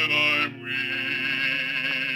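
Music: a slow song sung by a male bass voice with accompaniment, with a brief break about half a second in.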